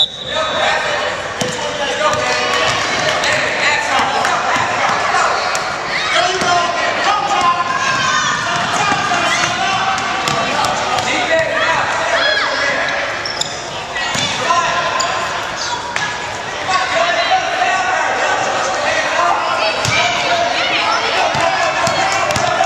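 Basketball bouncing on a hardwood gym floor, set against many spectators talking and calling out at once in a large, echoing hall.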